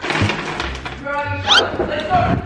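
A girl's high-pitched excited squeal, held briefly and then sliding sharply upward in pitch, over rustling movement noise.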